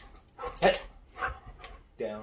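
Vizsla giving a few short, excited barks while play-fighting, the loudest about two thirds of a second in.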